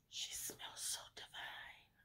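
A woman whispering softly: a few breathy syllables without voice.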